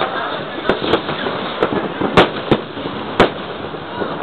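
New Year's Eve fireworks and firecrackers going off: a dense, steady crackle of many explosions with about six sharp bangs, the loudest a little past two seconds and a little past three seconds in.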